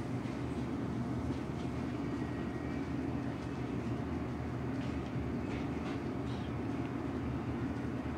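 Steady low rumble of yakiniku restaurant background noise, with a few faint clicks of chopsticks and tableware.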